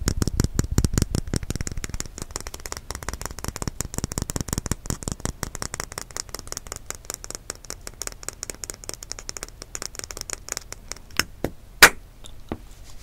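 Fingernails and fingertips tapping and scratching on the shell of a brown hard-boiled egg, a fast run of small clicks. The clicks are densest in the first couple of seconds and thin out, ending in a few separate clicks and one sharp, loud click just before the end.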